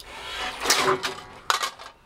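Shotgun fire from a Saiga 12 semi-automatic 12-gauge at a thrown clay, after a clay thrower launches it. A loud noisy swell peaks under a second in, and a sharp bang comes about a second and a half in.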